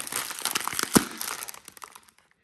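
Foil chocolate-buttons pouch crinkling as it is squeezed, with one sharp pop about a second in as the air pressure bursts its sealed top open.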